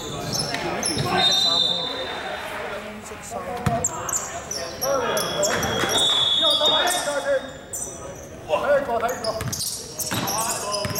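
A basketball being dribbled and bouncing on a hardwood gym floor during play, with players' voices calling out in a large echoing hall.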